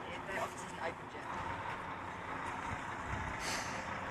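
A heavy goods lorry running at the roadside, a steady low engine and traffic noise, with a short high hiss near the end. Faint voices are in the background.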